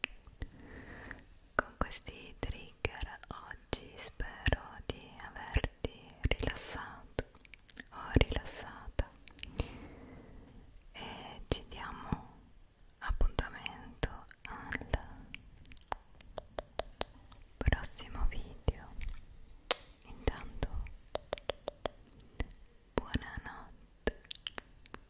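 Close-miked ASMR whispering into the microphone, broken up by many sharp wet mouth and tongue clicks.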